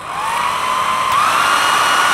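Handheld electric hair dryer switched on: its motor whine rises as it spins up, steps up in pitch about a second in, then runs steadily over the rush of blown air.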